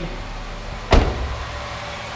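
Car door of a 2007 Saturn Ion being shut: one sharp thud about a second in.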